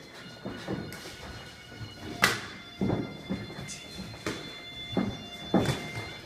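Sparring strikes: gloved punches and shin-guarded kicks landing as a string of sharp hits, the loudest a little over two seconds in, with feet moving on the gym floor. Faint background music runs underneath.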